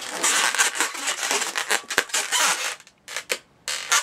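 A 260 latex twisting balloon rubbing against the hands as it is gripped and pulled down into a flower petal twist, dense for the first three seconds, then a few short sharp clicks near the end.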